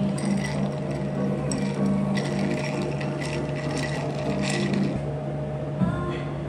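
Café room sound: a steady low hum with a few light clinks, like glassware or dishes being handled.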